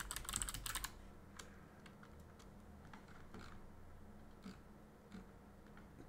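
Computer keyboard typing, faint: a quick run of keystrokes in the first second, then a few scattered single clicks.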